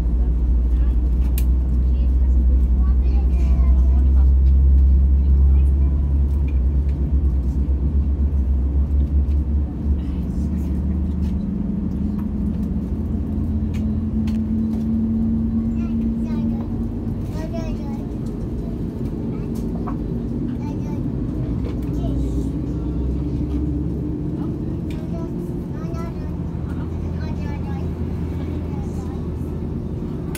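Airbus A330neo cabin noise heard from a window seat. A deep rumble in the first ten seconds or so gives way to a steady hum whose pitch slowly rises, with faint voices in the cabin.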